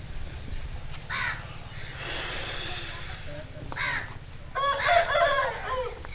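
Birds calling outdoors: two short calls about one and four seconds in, then a longer call near the end that rises and falls in pitch, over a steady low rumble.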